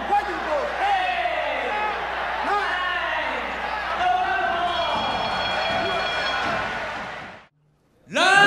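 A man's excited broadcast commentary over a haze of arena crowd noise from fight footage, cutting off suddenly near the end.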